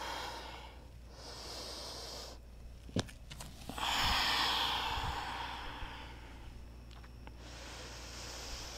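A person breathing audibly: a soft breath early on, a longer, louder exhale starting a little under four seconds in, and another breath near the end, with a single soft click about three seconds in.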